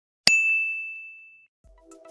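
Notification-bell sound effect: a click with a single bright ding that rings out and fades over about a second. Music starts faintly near the end.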